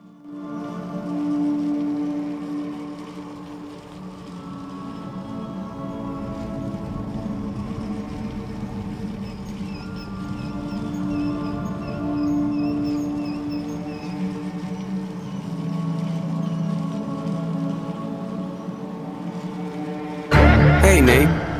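Slow background music of long held tones, with a few faint short high notes in the middle.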